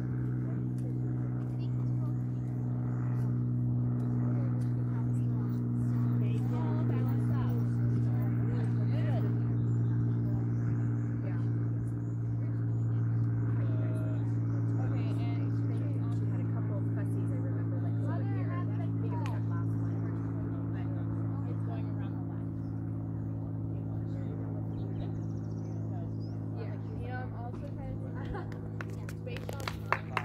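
A steady low mechanical hum of constant pitch, like an engine or motor idling, with faint distant voices and bird chirps above it. A brief knock comes at the very end.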